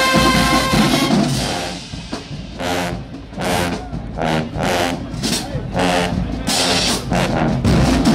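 High school marching band: a held brass chord cuts off about a second in, then a run of short, evenly spaced blasts over bass drum.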